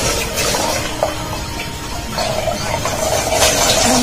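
A steady rush of water noise, with faint background music tones underneath.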